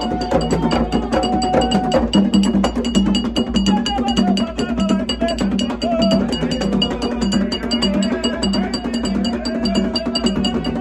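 Ceremonial hand drumming with a ringing metal bell keeping a fast, steady rhythm, and a group of voices singing over it.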